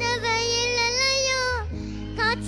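A boy singing a Tamil gana song, holding one long wavering note that ends about a second and a half in, over steady backing music.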